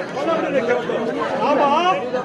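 A man's voice declaiming stage dialogue in Tamil, rising and falling strongly in pitch, with other voices chattering in the background.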